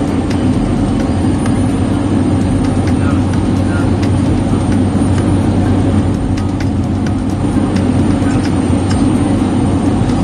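Helicopter cabin noise: turbine engines and rotor heard from inside the cabin in flight, a loud, steady drone.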